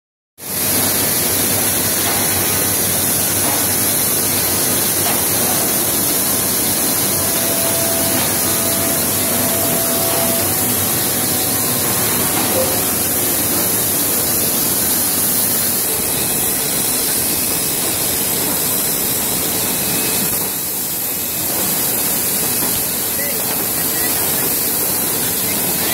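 Steady machinery din of a plywood mill floor, with a veneer core composer and the surrounding machines running, heard as an even hiss-like noise that holds level throughout and eases slightly near the end.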